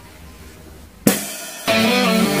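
Quiet room tone for about a second, then a sudden loud crash hit starts the song. An acoustic drum kit with cymbals then plays along with a rock backing track, and guitar comes in just before the end.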